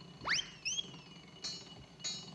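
Cartoon whistle sound effect: a fast upward swoop about a quarter second in, a second short rise, then a long slide down, followed by a brief bright ping about a second and a half in.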